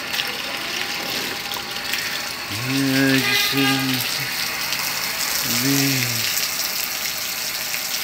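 Steady rush of running water, with a man humming or singing a few drawn-out notes about three seconds in and again near six seconds.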